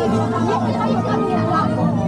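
Riders chattering over background music with steady held tones.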